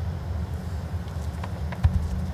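A steady low hum with a few faint clicks, then a single soft thud near the end as a lawn bowl is delivered and lands on the carpet rink.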